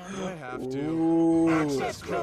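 A person's voice holding one long, drawn-out wordless call. It swells up about half a second in, stays on a steady pitch for about a second, then falls off.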